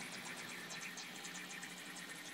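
Faint trickling of water from a small aquarium waterfall, light irregular splashes over a low steady hum.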